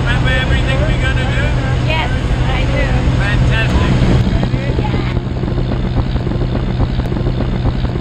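Light aircraft's propeller engine droning steadily inside the cabin of a skydiving jump plane. In the second half the voices fade and a rougher rush of air rises over the drone as the door stands open.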